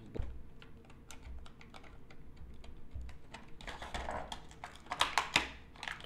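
Stiff plastic blister packaging being pried and pulled apart by hand: a run of small irregular clicks and crackles, with louder crinkling in the second half.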